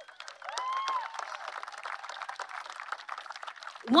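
Audience applauding, many hands clapping together. A single voice cheers briefly about half a second in.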